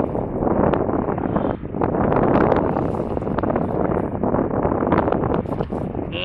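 Wind buffeting the microphone: a rough, uneven rushing noise that rises and falls with the gusts.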